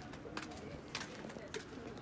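Flip-flops slapping on a concrete lane, three steps at an even walking pace about every half second, with faint low cooing bird calls underneath.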